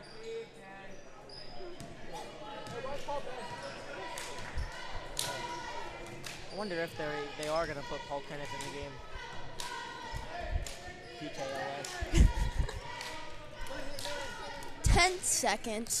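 A basketball dribbled on a hardwood gym floor: a few scattered low bounces, the loudest cluster about twelve seconds in, over the general chatter of spectators in the gym.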